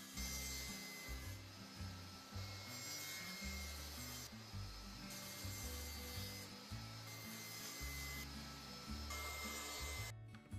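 Power saws cutting thin quarter-inch plywood in several short takes, with a faint steady whine, under quiet background music with a bass line.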